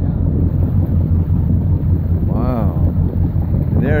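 Motorboat under way: a steady low engine drone, with wind rumbling on the microphone.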